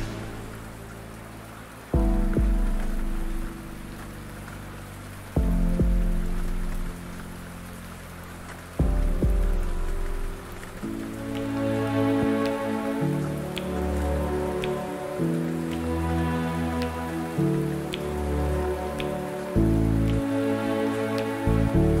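Steady rain sound under lofi hip hop music. Three sustained chords come in a few seconds apart, then about halfway a soft beat with light regular ticks joins.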